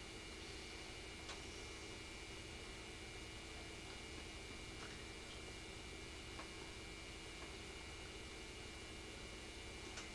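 Low steady hiss and hum of room and recording noise, with a few faint, irregularly spaced ticks.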